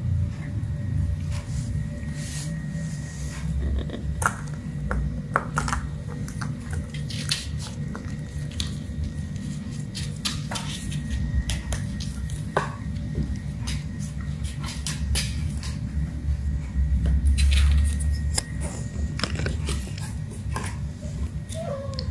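Kittens playing with a small plastic ball and a cardboard box on a tiled floor: scattered light clicks, taps and scrapes, irregular throughout, over a steady low hum.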